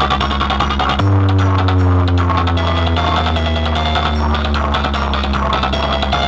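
A competition-style DJ remix played loud through a DJ sound rig of horn loudspeakers and large bass cabinets. About a second in, a deep bass note comes in and holds, with a falling sweep above it.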